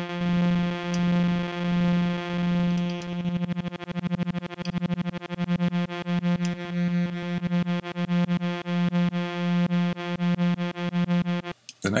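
Lyrebird West Coast synth (Reaktor Blocks) holding one low note whose self-triggering envelope pulses it over and over at uneven, randomised rates: slow swells about a second apart, a fast stutter a few seconds in, then swells again. The sound stops suddenly near the end.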